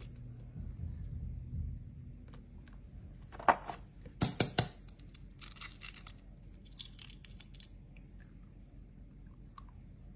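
Eggs being cracked and their shells pulled apart by hand over a plastic mixing bowl to separate the whites from the yolks. A few sharp cracks come about four seconds in, with fainter shell crackling around them.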